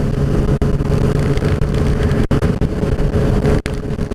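Motorcycle engine running at a steady cruising speed, its note held level, with wind rushing over the microphone.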